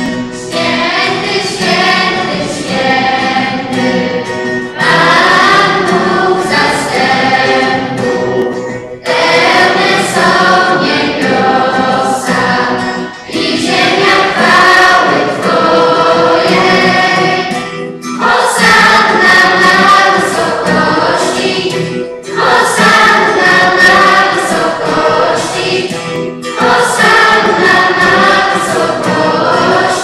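A choir singing a church hymn during Mass, in phrases of about four seconds with short breaths between them.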